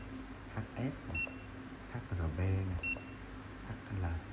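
Handheld metal hardness tester (HN685) giving two short, high beeps about a second and a half apart as its unit-change key is pressed. Each beep confirms a press that switches the hardness scale shown.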